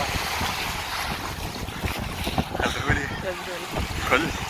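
Feet splashing through shallow seawater as a man runs out of the sea, with wind buffeting the microphone. A man's voice comes in over it during the second half.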